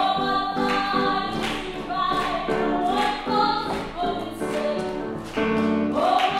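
A woman singing long, held notes with grand piano accompaniment.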